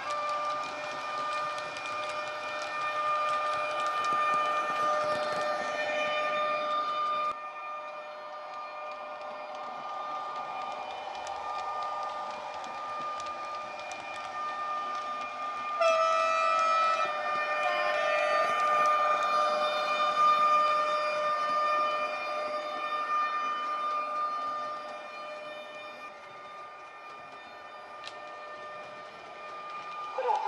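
Model railway sound decoder playing the electric whine of an ÖBB Taurus locomotive: a steady, pitched drone that holds one note with its overtones. It grows louder about halfway through as the train passes close, with a brief step in pitch, and fades near the end.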